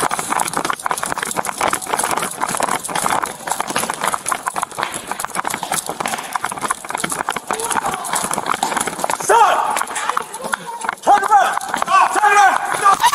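Running footsteps pounding on a hard store floor with the body-worn camera jolting and rubbing at each stride, a fast run of thuds and rustle. Near the end a raised voice cries out.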